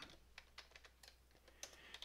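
Faint computer keyboard typing: scattered, irregular key clicks.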